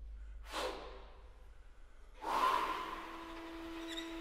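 Live chamber octet (clarinet, bassoon, horn, string quartet and double bass) in a quiet passage. There are two short noisy rushes of sound, the first about half a second in, fading away. The second, louder, comes about two seconds in and leads into a held note with higher notes sounding above it.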